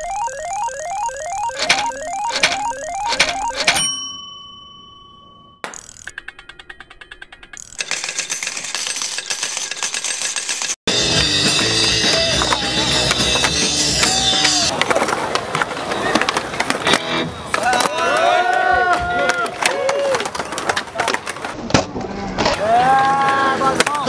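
Slot-machine sound effect: reels clicking in a steady rhythm, then a ringing ding about four seconds in that fades away. After a short stretch of clicks and noise, a loud music track cuts in about eleven seconds in and runs on.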